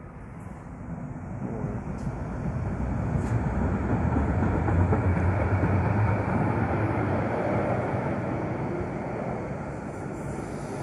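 A DVG tram running past along an underground platform: its rumble builds as it approaches, is loudest as it passes close by about halfway through, then fades as it pulls away down the tunnel.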